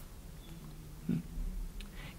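A man's short, low "hmm" about a second in, over faint room tone with a steady low hum.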